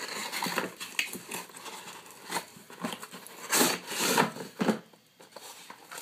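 Cardboard box and packaging rustling and scraping as an external hard drive in its molded end caps is pulled out by hand, in an uneven run of short scrapes that are loudest around the middle.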